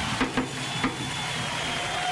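Studio background: a steady hiss with a few light knocks and clicks and a faint, steady high tone.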